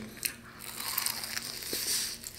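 Biting into the crisp battered crust of a fried chicken wing, with a crackly, crunching sound.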